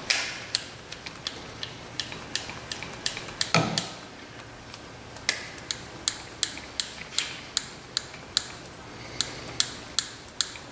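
Hand-pumped grease gun greasing a new ball joint through its zerk fitting: a run of sharp clicks and creaks from the gun's pump strokes, with one louder creak a few seconds in and then a steady two or three clicks a second.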